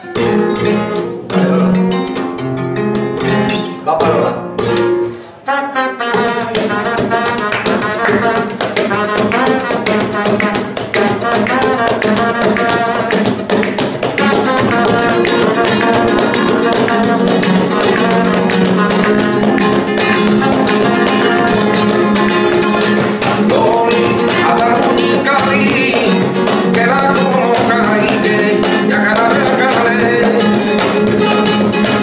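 Spanish guitar played by hand. It opens with a few separate chords, then settles into continuous, percussive strumming that holds a steady, even rhythm through the second half.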